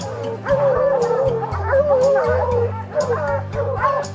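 Hounds baying at a treed bear: long, wavering howls, several dogs calling over one another. Background music with sustained low notes runs underneath.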